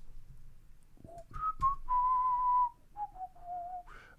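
A man whistling a short falling phrase of about six notes, starting about a second in, with one note held for most of a second in the middle. A couple of faint clicks come near the start.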